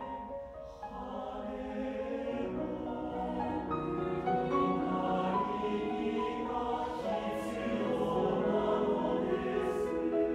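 Mixed choir singing held chords in several parts, with piano accompaniment, swelling louder over the first few seconds.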